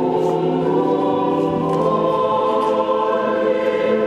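A choir singing slowly in long-held chords.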